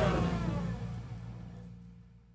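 The final chord of a band recording with saxophone and brass, dying away. Some notes bend downward in pitch while low notes hold, and it fades to silence near the end.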